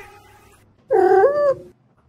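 A cat meows once, about a second in: a single bending call lasting just over half a second.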